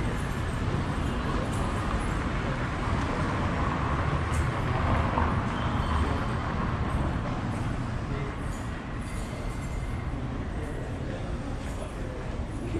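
City street ambience: steady traffic noise with a low rumble, swelling about halfway through as a vehicle passes, with voices of passers-by.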